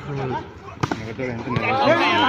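A volleyball being hit with a sharp smack a little under a second in, followed by a fainter knock, over players shouting.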